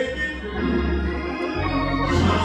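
Instrumental gospel accompaniment: sustained organ chords over a steady bass.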